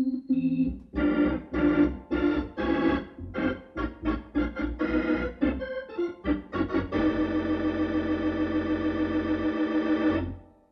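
Electronic organ playing a lively run of short, detached chords, then a closing chord held for about the last three seconds.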